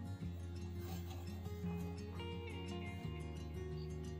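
Quiet background music of held notes over a steady bass, the chord changing about three seconds in.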